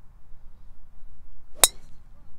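A golf driver striking a teed-up ball once, about one and a half seconds in: a single sharp metallic ping with a short ring, from a really good connection off the tee.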